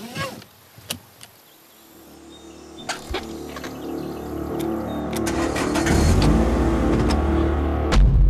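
Car engine running and growing steadily louder over several seconds, after a few sharp clicks in the first seconds, one of them as the seat belt is pulled and fastened.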